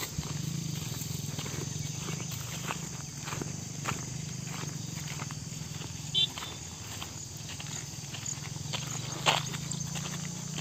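Footsteps on a dirt footpath through grass at an even walking pace, about two steps a second, over a steady low hum. A short high chirp comes about six seconds in, and a sharp click near the end.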